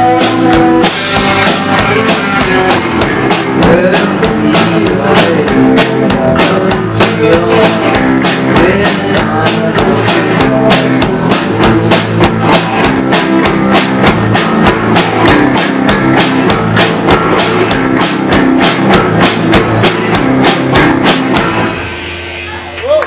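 Live indie rock band playing an instrumental passage: distorted electric guitars over a drum kit with a steady run of cymbal and drum hits, loud throughout, cutting off right at the end as the song finishes.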